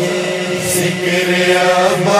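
Male vocal chorus holding a steady, wordless chanted drone: the backing of an Urdu manqabat, sung between the lead reciter's lines.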